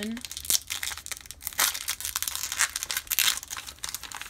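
A foil-lined baseball card pack wrapper being torn open along its top seam and crinkled as the hands pull it apart: a run of irregular crackles and rustles.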